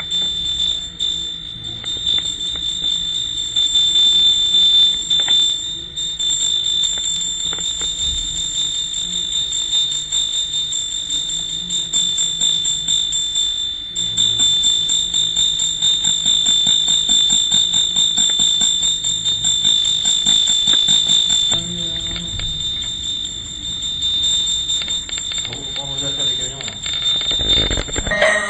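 Small brass hand bell rung rapidly and continuously at an altar, giving a steady high ringing that cuts off suddenly near the end.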